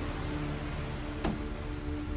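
Background music with steady held tones, and a single short click a little past halfway.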